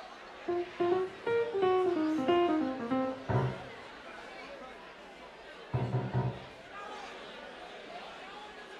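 Electric guitar playing a short run of single notes that step down in pitch, then two heavier low notes struck a couple of seconds apart, over crowd chatter.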